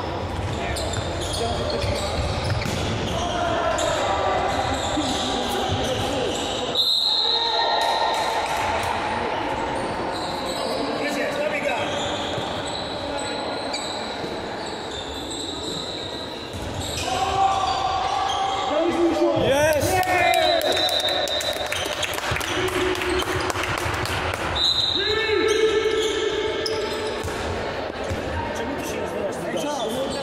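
Handball game sounds in a large sports hall: players shouting and calling to each other, with the ball bouncing on the court floor, all echoing in the hall. The shouting comes in louder bursts about a third of the way in, again past the middle, and near the end.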